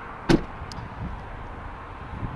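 A single sharp knock about a third of a second in, then a faint tick, over a low steady outdoor background.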